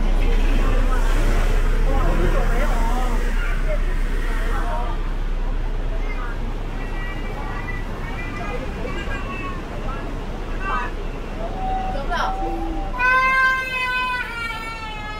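Busy city sidewalk: passers-by talking as they walk past, over a low steady hum. Near the end a loud, high-pitched drawn-out cry with a slightly falling pitch stands out.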